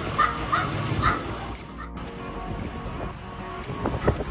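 A small dog yapping in quick short yelps, about three a second, that stop about a second in. After that only wind and a low steady hum remain.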